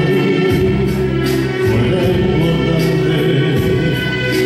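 A man singing live into a handheld microphone over a karaoke backing track with a steady beat.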